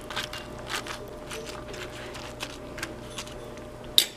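A pan of kare kare broth simmering under freshly added bok choy, with light irregular crackles and ticks and a faint steady hum. A single sharp tap comes at the very end.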